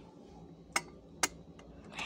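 Two sharp clicks about half a second apart, with a few fainter ticks, over a faint low hum.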